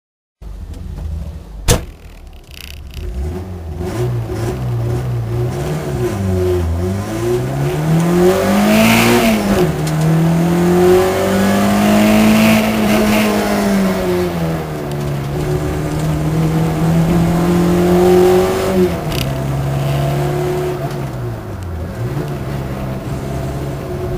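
Peugeot 106 Rallye's engine heard from inside the cabin, driven hard on a circuit: the revs climb and fall back several times as it changes gear and brakes for corners. A sharp knock sounds near the start.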